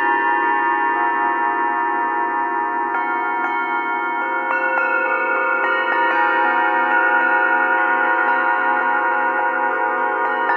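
A matched diatonic set of antique cup-shaped singing bowls struck one after another with mallets, playing a carol melody. Each strike rings on under the next, so the tones overlap, and the lower tones waver slowly.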